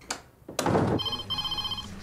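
Electronic office desk telephone ringing with a trilling ring, starting about a second in, just after a short thump.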